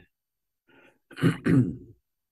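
A man clearing his throat, two rough bursts a little over a second in, after a faint breath.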